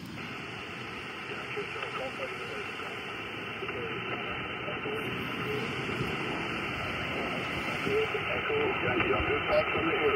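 Xiegu G90 HF transceiver receiving voice on the 20-meter band: a steady hiss of band noise with a distant station's voice, weak and fading, barely coming through it. The noise grows slightly louder toward the end as the signal comes up.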